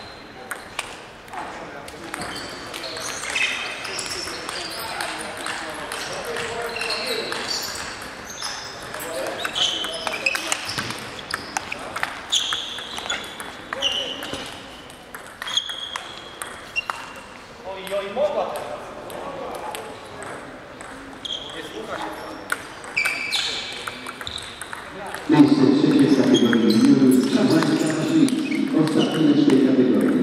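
Table tennis balls clicking off bats and table, in quick irregular runs of ticks during rallies with gaps between points, ringing in a large sports hall. Voices carry in the hall, with a louder, closer voice over the last few seconds.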